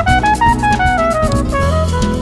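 Jazz quartet of trumpet, guitar, bass and drums playing. A quick run of short melodic notes climbs and then comes back down over the drum kit's cymbals and a low bass line.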